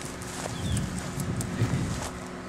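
Footsteps and handling noise from a handheld camera as the person filming walks up to a headstone: soft, irregular low thumps starting about half a second in.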